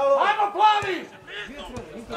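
A man's voice talking, loudest in the first second, then quieter: only speech.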